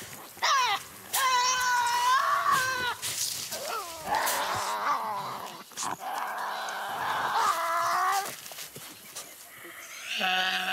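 Tasmanian devils screeching over food: a rising cry, then a long wavering cry, then harsher rasping screeches, dying down near the end. Full-scale screeching is the top of the devils' escalation, when a brawl or chase is most likely.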